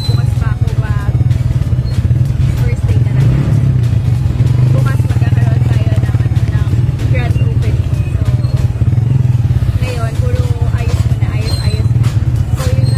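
Motorcycle-sidecar tricycle's engine running, a steady low drone with rattling, heard from inside the passenger sidecar.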